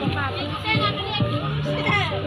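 Crowd chatter with many overlapping voices, children's among them, over music playing in the background.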